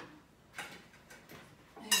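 Faint clinks of dishes and cutlery at a dinner table, ending with a sharper clink that rings briefly as a plate is set down.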